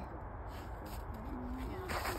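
A faint murmured voice over a low steady rumble, with a short crunch in the snow just before the end.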